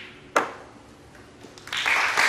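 A single sharp click of the snooker shot about half a second in. Audience applause swells up near the end as the red is potted.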